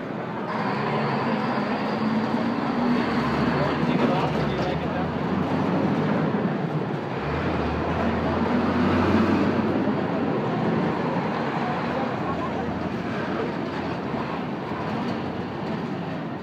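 Busy street ambience: many people talking at once over traffic, with a heavy vehicle's engine rumbling, loudest in the middle.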